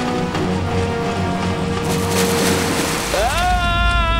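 Cartoon soundtrack music with held notes, a brief rushing noise about two seconds in, then a character's long, rising yell starting about three seconds in over a low rumble.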